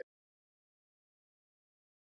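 Near silence: the sound track drops out completely.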